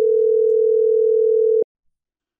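Telephone ringback tone on an outgoing Webex App call: one steady tone that cuts off about one and a half seconds in. It signals that the far-end phone is ringing and the call has not yet been answered.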